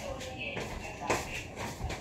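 Rustling and light knocks of fast-food packaging and containers being handled on a dining table, with two sharper knocks, one about halfway and one near the end, under low talk.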